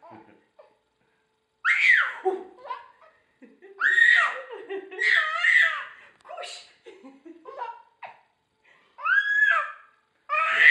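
A baby squealing and laughing with delight in high-pitched, rising-and-falling squeals. The squeals come in short bouts: one about two seconds in, a longer run a few seconds later, and another near the end.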